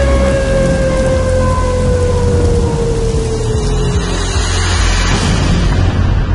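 Instrumental passage of an electronic dance track: a sustained synth tone glides slowly downward over a dense hiss-like noise wash and a heavy, steady bass. About halfway through, the top of the hiss dulls away.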